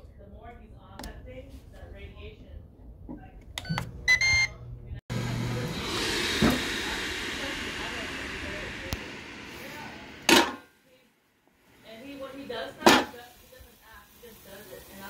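Ninja Foodi Grill's control panel beeping as its buttons are pressed, then the grill's fan starting suddenly with a steady rushing hiss that slowly fades. A few sharp knocks follow.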